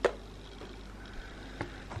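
Small clicks from a battery nose trimmer being handled: one sharp click at the start, then a couple of faint ticks over quiet room tone.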